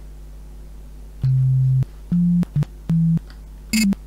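Sine-wave notes from a home-made C++ software synthesizer, played on computer keyboard keys: five short low beeps of changing pitch, each starting and stopping with a click or pop, a bit scratchy. The clicks come from the sine wave being switched on and off abruptly mid-cycle, which makes the speaker cone jump.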